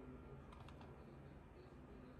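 Faint keystroke clicks on a laptop keyboard: a few quick taps about half a second in, against near silence.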